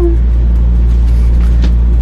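Air fryer running, a steady low hum and rumble with a few even low tones under it.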